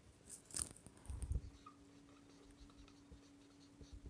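Faint scratching of a marker pen writing on a whiteboard, with short strokes in the first second and a half, then quieter.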